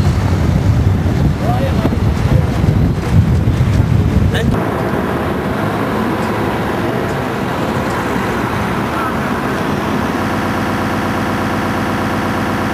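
Wind buffeting the camcorder microphone with a loud rumble, which stops suddenly about four and a half seconds in, leaving a steadier background of street traffic.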